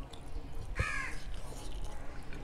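A bird cawing once, short and harsh, just under a second in, over faint clicks of eating.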